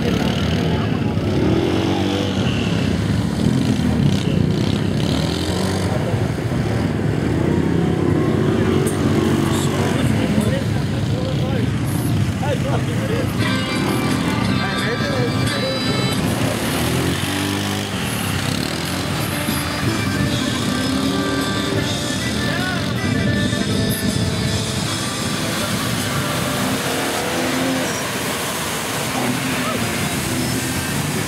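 Pickup truck engines revving as trucks churn through a flooded mud pit, with a crowd talking.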